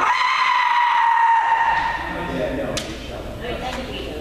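A kendoka's long, held kiai shout, its pitch sinking slightly, cutting off about a second and a half in. A couple of sharp cracks of bamboo shinai strikes follow.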